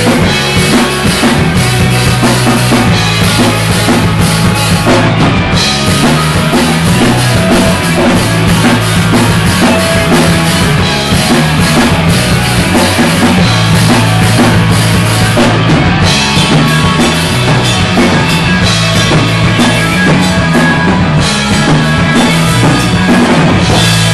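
A rock band playing loud and live: a full drum kit over steady, held bass notes and band instruments, dense and unbroken.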